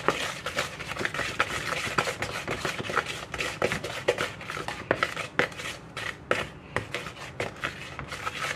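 Wooden spoon beating butter and sugar dough in a mixing bowl, a quick, irregular run of scrapes and knocks against the bowl as it is creamed until fluffy.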